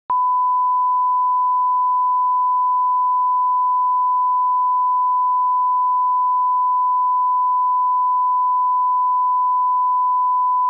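Steady 1 kHz line-up test tone, the reference tone laid under SMPTE colour bars at the head of a tape: one unbroken pure pitch at a constant level, starting a split second in.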